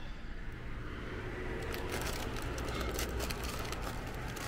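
Paper food sleeves and wrappers rustling and crinkling as they are handled, thickest from about a second and a half in, over a low steady rumble.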